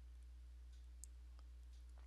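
Near silence with a low steady hum and a couple of faint computer mouse clicks, the first about a second in.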